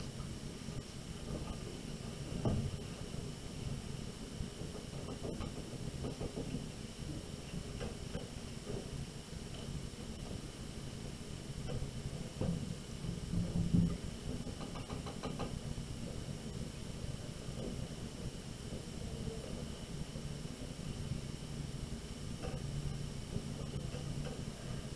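Quiet room tone: a low steady hum, with a few faint bumps about two and a half seconds in and again around the middle.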